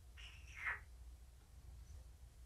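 A domestic cat giving one short, high-pitched meow that slides down in pitch, under a second long.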